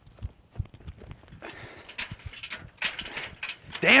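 Quick footsteps, then a run of irregular knocks and rattles as the bars of an old wrought-iron gate are grabbed and shaken.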